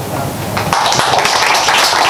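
Audience applause: many hands clapping, breaking out a little under a second in.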